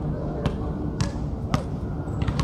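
Basketball being dribbled on a hard outdoor court: three sharp bounces about half a second apart.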